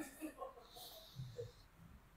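A person's faint, breathy exhale, lasting about a second, while his neck is stretched under the therapist's hand pressure.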